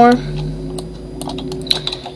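Computer keyboard keys and mouse buttons clicking a few times, the hotkeys of 3D-modelling software, under a low, steady hummed voice.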